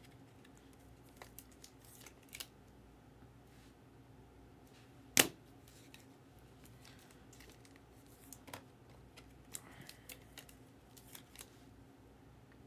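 Scattered small clicks and taps of trading cards and their rigid plastic holders being handled on a table, with one sharp click about five seconds in, over a faint low hum.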